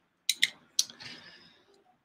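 Three sharp metallic clicks within the first second, then a short faint hiss: a folding knife with a built-in titanium corkscrew being handled in the hand.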